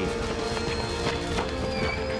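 Trailer music with a held note, over the hoofbeats of a galloping horse.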